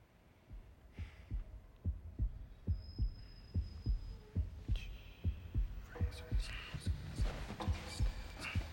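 Pounding heartbeat sound effect: low double thumps, close to two beats a second, starting about half a second in and growing steadily louder. Music swells under it in the last couple of seconds.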